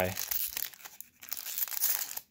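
Foil wrapper of a Pokémon Evolving Skies booster pack crinkling and squeaking as it is handled and the cards are pulled out, easing briefly about a second in and then crinkling again; the packs are loose and very squeaky.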